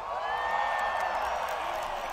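Large concert crowd cheering and screaming right after a rock song ends, heard through a phone recording of the show.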